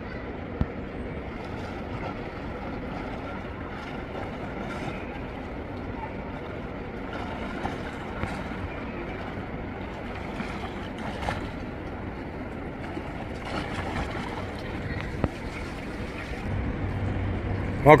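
Swimming pool ambience: steady water splashing and lapping from a swimmer doing a breaststroke drill, with faint voices in the background.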